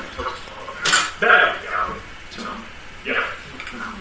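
A four-slice stainless-steel toaster popping up, with one sharp metallic clack about a second in as its spring-loaded carriage throws the bread rolls up.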